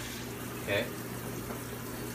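Kitchen faucet running steadily into a stainless steel sink, a plain tap-water stream with a low hum beneath it.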